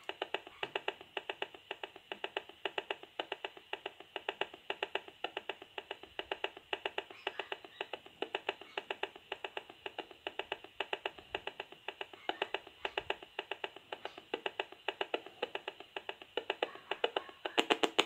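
Gigahertz Solutions HF35C RF analyser's built-in speaker ticking steadily, several clicks a second, as it renders the pulsed radio signal it picks up as sound. Just before the end the clicks briefly turn louder and denser as the smart meter transmits a burst and the reading spikes.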